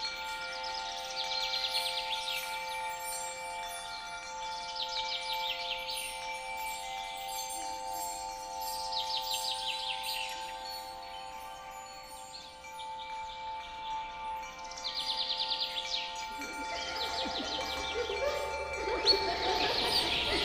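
Fantasy forest soundscape: a sustained, shimmering chime-like drone of several steady tones under bird trills that come every few seconds. Near the end the drone fades and a busier layer of chirping and calls comes in.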